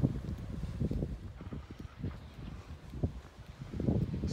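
Wind buffeting the camera microphone in uneven low gusts, with walking footsteps on a tarmac lane.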